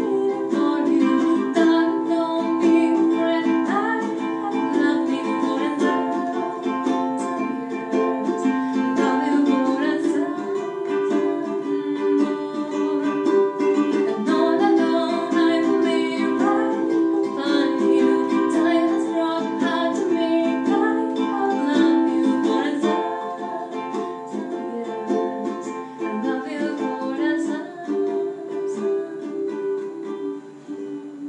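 Leolani concert ukulele with a solid cedar top, strummed in a steady rhythm through a C–Am–F–G chord progression. The strumming gets softer over the last several seconds.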